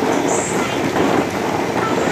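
Motorised rotating toy fishing-game board running, a steady, dense mechanical rattle as the plastic board turns.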